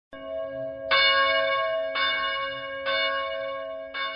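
Church bells ringing, five strikes about a second apart, each ringing on into the next.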